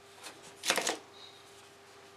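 Brief rustling scrape of a plastic disco-ball lamp being picked up off a table by hand, loudest just under a second in, with a faint steady hum underneath.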